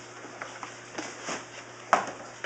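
Quiet room tone with a few faint clicks and a brief louder noise near the end.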